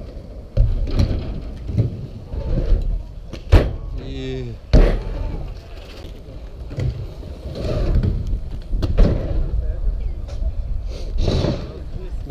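Skatepark sounds: a low rolling rumble of wheels on asphalt, with two sharp knocks a little over a second apart near the middle and a brief voice between them.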